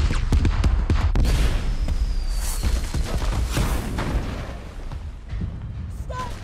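Movie explosion sound effects: a deep blast rumble with a rapid run of sharp cracks and debris impacts, fading over the last few seconds, with music underneath.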